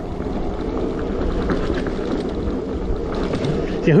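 Luna Banana electric bike with a Bafang BBSHD mid-drive motor ridden over a rough dirt trail. A steady mix of motor hum and tyre and frame rattle at an even level.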